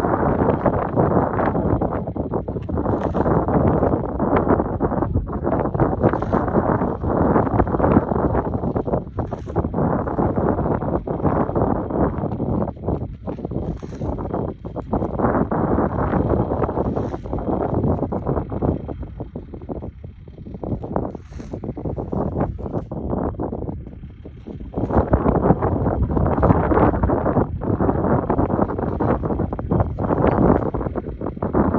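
Wind buffeting the microphone: a loud, rough rumble that rises and falls with the gusts and eases briefly twice in the second half. Faint scrapes of a paint scraper cutting thin slivers of soil beside a seed trench can be heard under it.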